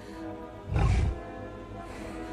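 Orchestral film score with sustained tones, and a short, loud growl from Kong, the giant ape, about three-quarters of a second in.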